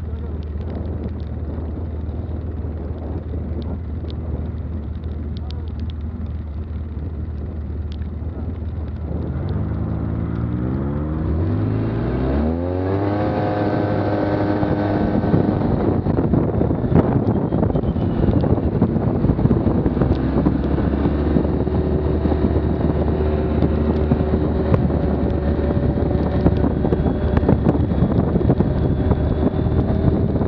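ATV engine idling with a steady low note, then revving up as the machine pulls away about ten seconds in, its pitch climbing over a few seconds. It then runs at a steady higher speed with wind and rough-track noise.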